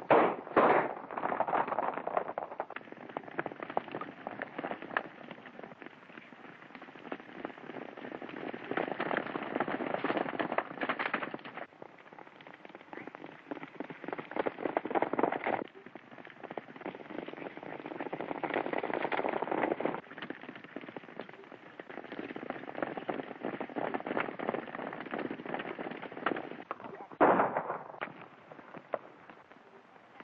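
Several horses galloping, the hoofbeats dense and noisy on a thin early sound-film track. Sharp cracks cut through, the loudest right at the start and one about three seconds before the end.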